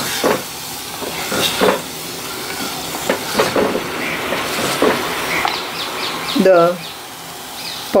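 Amla and ground spice paste sizzling in hot oil in a clay pot, with a steady hiss and several irregular knocks and scrapes of a wooden spatula stirring against the pot.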